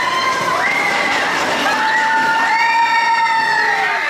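Several roller-coaster riders screaming together, in long held screams that overlap and slide in pitch.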